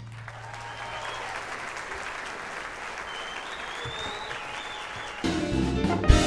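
Audience applauding at the end of a song. About five seconds in, the band starts the next number with electric guitar and drums.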